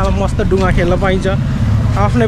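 A person's voice talking over a steady low rumble.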